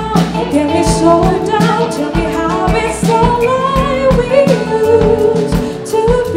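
Live soul band playing: a woman singing the lead melody over electric guitar, bass, keyboard and drums, with steady drum hits.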